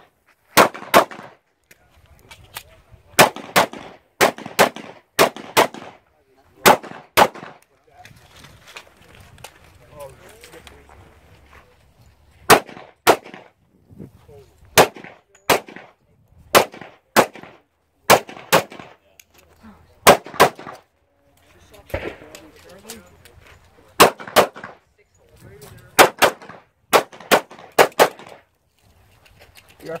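Pistol shots fired mostly in quick pairs, a few tenths of a second apart. Several runs of pairs are separated by pauses of a few seconds where little is heard.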